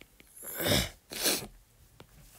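A person makes two short, loud breathy bursts about half a second apart, the first falling in pitch.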